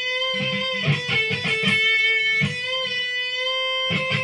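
Stratocaster-style electric guitar bending the B note, the ninth of A minor pentatonic, up a half step to C, the flat third. The bent note is held and picked again several times.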